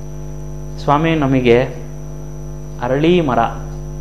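Steady electrical mains hum with a faint high whine above it, running under the audio, and a man's voice cutting in twice briefly, about a second in and again near three seconds.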